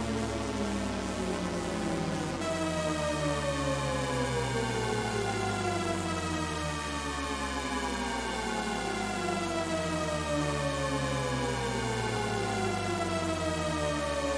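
Descending Shepard tone from a synthesizer patch on the Harmonic engine of Arturia Pigments 4, a single held note run through unison, delay and reverb effects. Its many stacked partials glide steadily downward together, so the pitch seems to fall forever without arriving. The sound brightens about two and a half seconds in.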